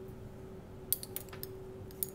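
A few light, sharp clicks from lab glassware being handled, a glass stir rod against a test tube: a cluster about a second in and another near the end, over a steady faint hum.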